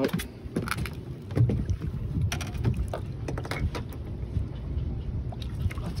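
Water splashing and slapping against the side of a small fishing boat as a hooked snook thrashes at the surface and is landed, with wind on the microphone as a low rumble. Scattered sharp knocks and clicks run throughout.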